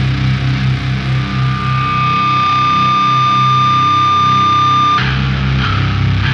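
Heavy rock band music. A pulsing low riff gives way to one long high held note while the low end drops out; the note cuts off sharply about five seconds in as the full band crashes back in.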